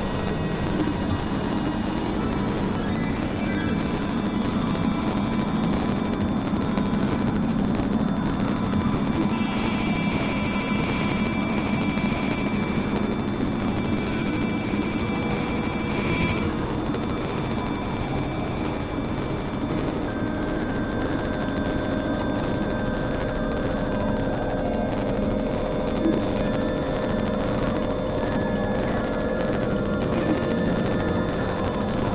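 Experimental synthesizer drone and noise music: a dense, steady low rumbling noise bed with held high tones layered over it. One high tone comes in about nine seconds in and stops around sixteen seconds. Other held tones enter in the second half.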